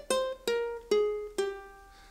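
Standard-tuned ukulele fingerpicked one note at a time: a descending scale run of four notes about half a second apart, each left to ring, the last fading out. The run is the scale that carries the arrangement into E-flat.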